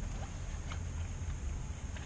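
Eating sounds: a fork clicking faintly a few times against a black plastic takeout bowl, with chewing, over a steady low rumble.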